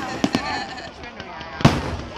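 Aerial fireworks bursting, with a couple of small pops early on and one loud bang about one and a half seconds in.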